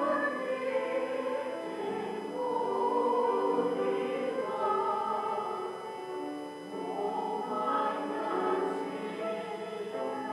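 Small church choir singing a slow sacred piece, the voices holding long notes together.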